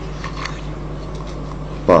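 Screwdriver working a screw on a metal FC-6S fiber cleaver, loosening the blade holder's screws: a few faint scrapes and ticks over a steady low hum.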